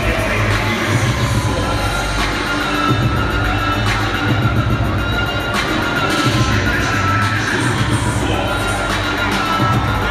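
Wrestler entrance music playing loudly over a large arena's PA system, with a steady heavy low end and a crowd cheering and shouting beneath it, recorded from the stands.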